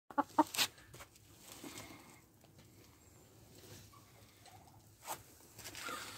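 Hen giving three quick, short clucks in the first second, then near quiet apart from a single sharp click about five seconds in.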